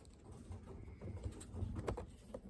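Light taps and scratches of a squirrel moving against a plastic blister pack, over a low rumble, with one sharper click near the end.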